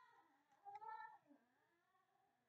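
Faint voice in the background: one drawn-out call, falling in pitch, about half a second in.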